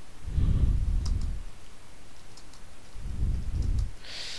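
Someone typing on a computer keyboard during a touch-typing key drill: a few faint, separate key clicks. A low rumbling noise swells twice, about half a second in and again near the end.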